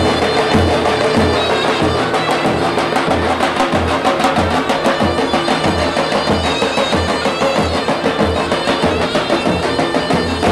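Two davul bass drums playing a folk rhythm: deep booms about twice a second from the heavy beater, with rapid light clicks from the thin switch on the other head. Over them a shrill zurna plays a folk tune.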